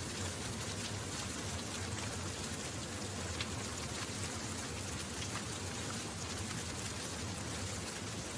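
Crackling fire sound effect: a steady hiss of burning flames with a few faint pops.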